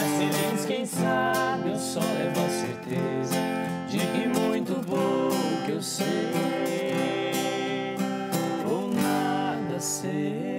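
Acoustic guitar strummed as accompaniment while two men sing together.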